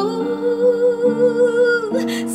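A woman singing one long held note with a slight vibrato over guitar accompaniment, whose lower notes change about a second in; a new sung note begins near the end.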